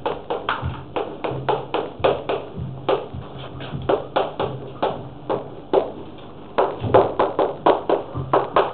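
Chalk writing on a blackboard: a quick, irregular run of sharp chalk taps and strokes, several a second, coming thickest near the end.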